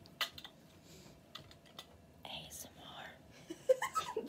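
A quiet pause in a small room: a few small clicks and taps, then a soft breathy whisper in the middle, with voices and laughter starting again near the end.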